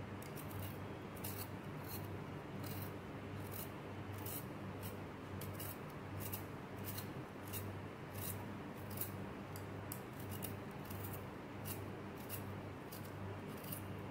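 Handheld vegetable peeler scraping the skin off a raw potato in short, even strokes, about two a second.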